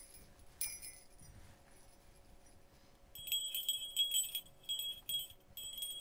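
Small bells hung on strings being shaken and jingling: one brief shake about half a second in, then a run of repeated jingles in the second half, with a thin ringing tone.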